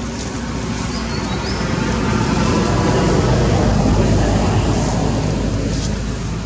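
A motor vehicle passing by, growing louder to a peak about four seconds in and then fading.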